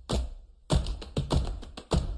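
A rhythmic run of sharp percussive taps, about half a dozen hits with a short pause about half a second in, and no pitched notes yet.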